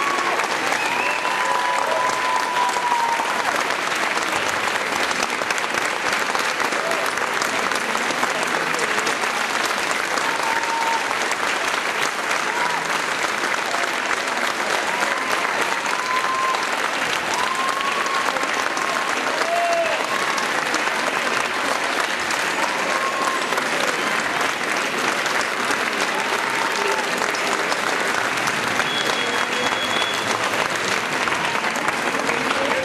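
A large audience applauding steadily, dense clapping at an even level, with voices calling out here and there above it.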